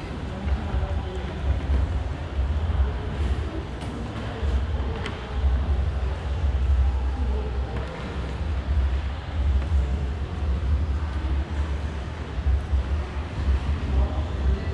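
Uneven, gusting low rumble of air buffeting the camera microphone, over a faint background haze.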